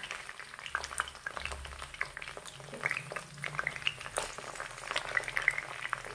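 Chicken feet sizzling in hot mustard oil in a kadhai, with irregular crackles and pops as tomato pieces are dropped into the pan.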